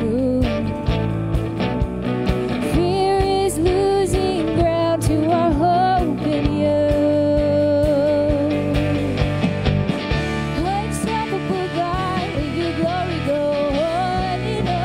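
Live worship band: a woman's lead vocal singing a held, sustained melody over keyboard, electric guitar and a steady drum beat.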